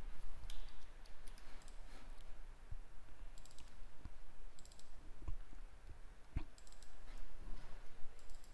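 Computer mouse clicking a number of times at irregular intervals, some clicks in quick pairs, over a faint steady low hum.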